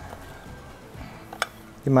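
A metal spoon stirring a dry seasoned flour mixture in a glass baking dish, with one light clink of the spoon on the glass about a second and a half in. Faint guitar background music runs underneath.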